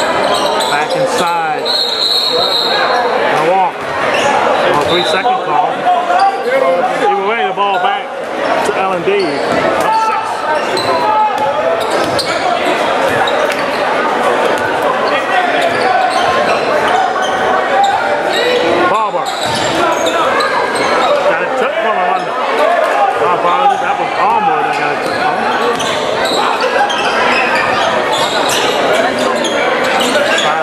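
A basketball dribbling and bouncing on a hardwood gym court during play, under constant crowd and player chatter, with the sound of a large gym hall.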